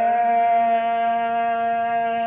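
A muezzin's voice calling the azan, the Islamic call to prayer, holding one long chanted note at a steady pitch.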